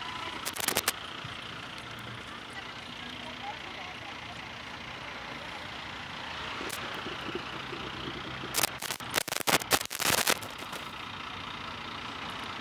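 Fire truck engine idling steadily, with faint voices in the background. A few sharp cracks come near the start, and a cluster of cracks and knocks comes about nine to ten seconds in.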